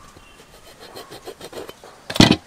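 A hand-held blade scraping and cutting into the rubber sidewall of an old tyre in quick repeated strokes, about four or five a second.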